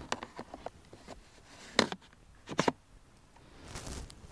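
Faint clicks and handling noises from hands working a 4x5 large format camera on its tripod, with two sharper clicks a little under a second apart in the middle.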